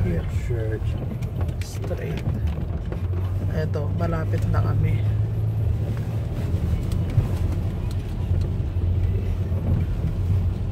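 Car cabin noise while driving: a steady low rumble of engine and road. A faint voice is heard briefly about half a second in and again around four seconds in.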